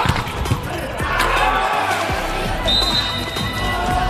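Indoor volleyball rally: the ball is struck hard at the net with sharp smacks in the first second, along with shoe squeaks and players' shouts. Near the end a steady high whistle blast lasts about a second, the referee ending the rally, over background arena music.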